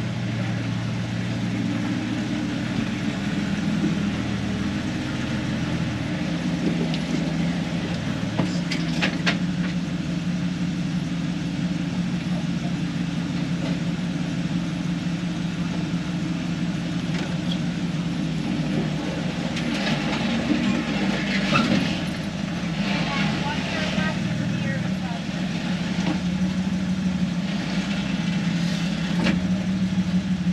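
A Jeep's engine idling steadily with a low, even hum, heard from inside the cab while the vehicle waits in place.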